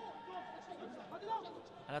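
Faint voices of footballers calling out to one another on the pitch, carrying across an empty stadium during open play.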